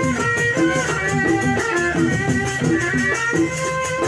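Live traditional Sasak dance music from a rudat ensemble: hand drums and a quick, even rattling beat under a repeating melody played over a steady held tone.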